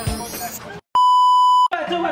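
A single steady high-pitched beep tone, edited into the soundtrack, lasting under a second; it cuts in sharply about a second in, right after a brief dropout of all sound, and stops just as abruptly, like a censor bleep.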